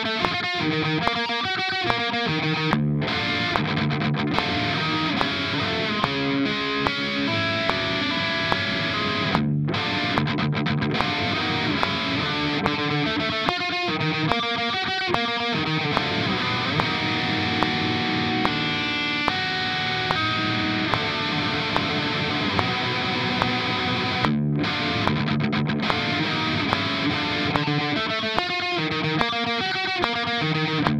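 Distorted ESP LTD electric guitar playing a black metal riff of picked minor-triad shapes and let-ring chords, with a few brief stops in the playing.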